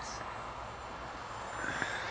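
Distant SkyCarver RC motor-glider with a Hacker electric motor, heard as a steady faint rushing over wind noise, with a thin whine starting near the end.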